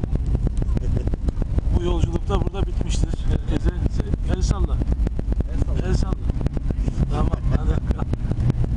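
Airliner cabin rumble as the plane rolls along the runway after landing, with a steady low roar and fast rattling throughout. Passengers' voices are heard talking over it at intervals.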